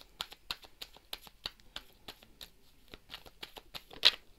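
A deck of oracle cards being shuffled by hand: a faint, irregular run of quick clicks of card on card.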